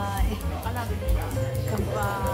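Background music with a steady bass line, and a small dog yipping and whining over it in short, rising calls.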